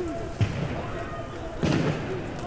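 Two thuds over faint crowd voices, a short one near the start and a louder, longer one near the end.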